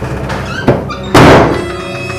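A loud, sudden thud a little over a second in, with a sharp click shortly before it, over background music.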